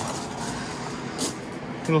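Box fan running in a greenhouse wall, a steady, even rushing noise.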